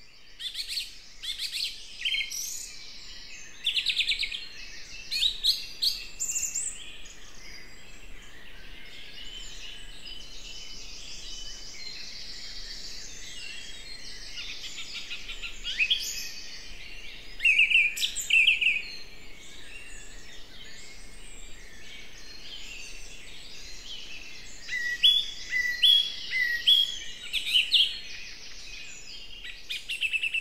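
Birdsong: several birds singing and calling at once, a dense chorus of chirps and trills over a faint steady background hiss, with louder bursts of song now and then, including a run of short repeated notes near the end.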